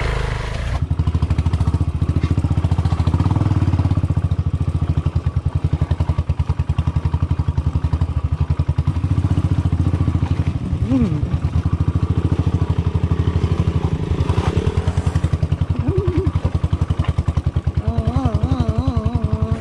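Royal Enfield single-cylinder motorcycle engine running at low revs with a steady, even thump, the bike riding slowly over a loose stony track.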